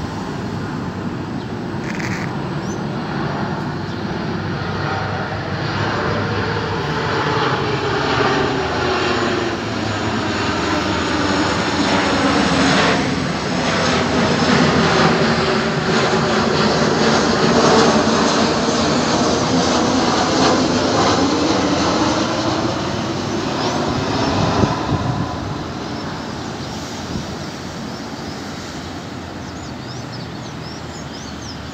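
Boeing 737-800 airliner's twin CFM56-7B turbofan engines passing low overhead on final approach: a jet roar that grows steadily louder, with a sweeping, phasing sound, peaks in the middle, and fades over the last few seconds. A short sharp knock comes shortly before the fade.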